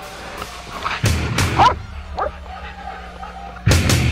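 Hunting dogs barking and yelping over a caught feral hog, with short loud bursts about a second in and again near the end.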